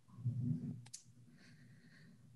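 A single faint, sharp click a little under a second in, during a quiet pause with a faint low sound just before it.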